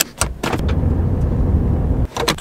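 A few sharp clicks, then the steady low rumble of a vehicle driving on a gravel road, heard from inside the cab; the rumble cuts off suddenly at the end.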